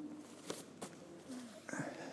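Quiet handling of a nylon reserve parachute canopy being laid down on a hall floor: a few light ticks and faint rustle in a reverberant room, with a brief murmured voice near the end.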